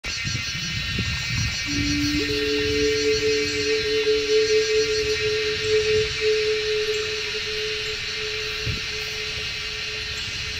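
A dense chorus of crickets trilling steadily and high, with a low rumble underneath. Two long held notes of background music come in about two seconds in and fade out near the end.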